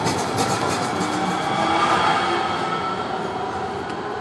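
VTA light-rail train pulling out of the station past the platform: a rising whine as it gathers speed and wheels clicking over the track, easing off near the end as it leaves.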